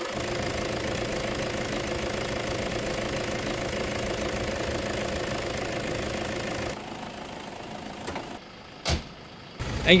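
A Toyota Fortuner's 2.5-litre D-4D turbo-diesel engine idling steadily and smoothly with no misfire. The sound drops away about seven seconds in, and a single sharp click comes near the end.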